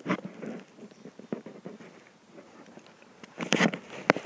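Faint scattered crackles and rustles from the person filming moving around the car on grass, with a brief louder rustle about three and a half seconds in.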